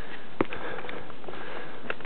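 A person breathing and sniffing close to the microphone while climbing, with a sharp click a little under half a second in and another near the end.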